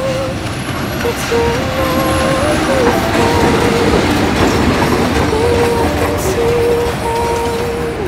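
A train passing close by: a loud, steady rush and rumble of wheels on the rails that swells from about a second in, is loudest around the middle and eases toward the end, under a song's sung melody.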